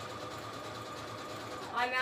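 Electric sewing machine running steadily, stitching a zigzag seam through paper, until near the end when it stops and a woman starts speaking.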